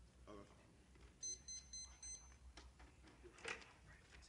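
An electronic timer beeping four quick times in a row, about a second in, in a quiet room. A short rustle of paper comes near the end.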